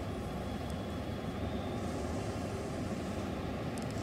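Steady low background rumble, with no speech over it.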